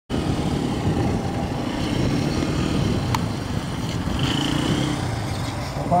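Steady low rumbling outdoor noise, with one faint click about three seconds in.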